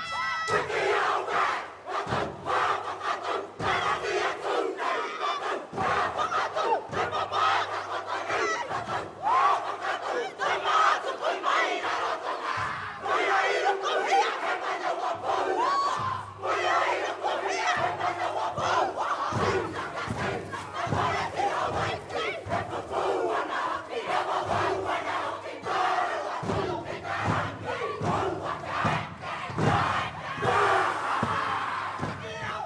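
Kapa haka group performing a whakaeke: many voices chanting and shouting haka calls in unison, punctuated by frequent sharp strikes of stamping and body slapping.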